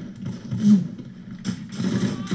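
Battle-scene soundtrack of a war drama playing: a steady low rumble with a brief louder burst about two-thirds of a second in and shorter ones near the end.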